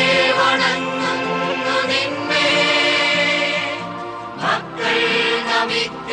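Choir singing a hymn in long held notes, with a brief break about four and a half seconds in.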